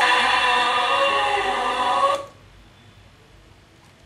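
A song with singing plays through a small homemade speaker, a single driver in an old LED bulb's housing. About two seconds in, the music cuts off suddenly, leaving a faint hiss.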